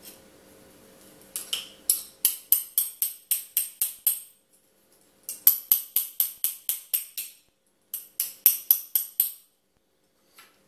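Small hammer tapping a copper fitting held in the hand. The taps come quick and light, about four a second, in three runs, each with a bright metallic ring.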